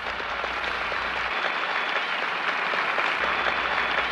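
A large crowd applauding steadily after a line of President Kennedy's 1962 Rice University moon speech, heard on the archival recording.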